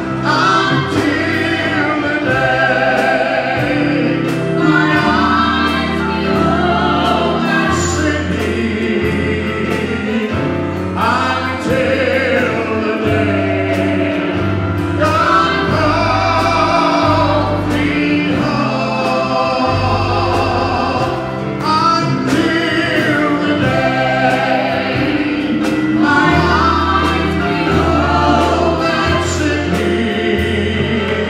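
Live gospel song: singers in harmony over electric bass, drum kit with cymbals, and keyboard, the bass moving from note to note every second or two.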